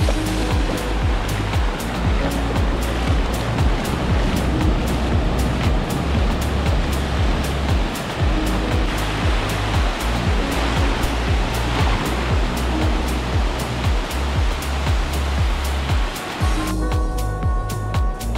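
Sea surf washing onto a sandy beach, a steady rushing wash, under background music with a bass line and a steady beat. Shortly before the end the surf sound cuts out, leaving only the music.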